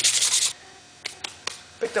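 Sandpaper being rubbed quickly back and forth by hand on a rusted, pitted metal cowbell (LP Black Beauty) to strip the rust, in fast even strokes that stop abruptly about half a second in. A few light knocks follow.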